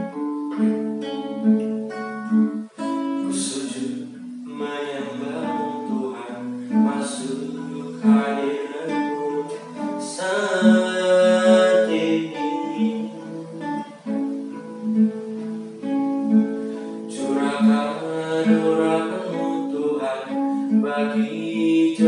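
A male voice singing an Indonesian worship song, accompanied by a strummed acoustic guitar.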